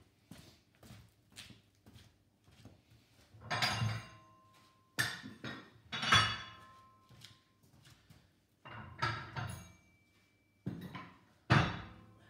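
Light footsteps, then a series of metal clanks and knocks, several leaving a brief ringing tone, as tools or parts are handled.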